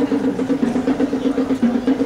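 Marching band horns playing one repeated low note in a quick, even pulse.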